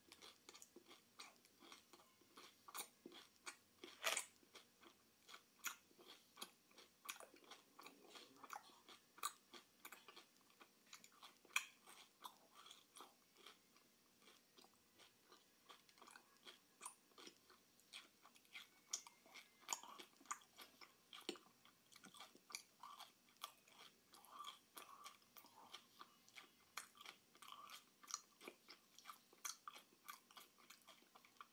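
A person chewing a mouthful of sweet snack food close to the microphone: quiet, irregular wet mouth clicks and small crunches, with a few louder smacks.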